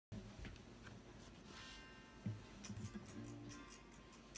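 Acoustic guitar with a capo being readied and starting to play, faintly: a few small handling noises and a knock about two seconds in, then light strums in the second half.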